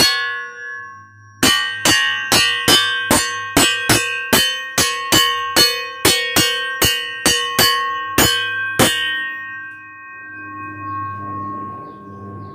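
Large steel circular saw blade, held up by hand, struck with a small hammer: one strike, then about twenty quick strikes at about three a second, each leaving a long, clear metallic ring that dies away slowly after the last strike. This is a ring test of the disc's soundness for knife steel, and the long clear ring is the result he wants.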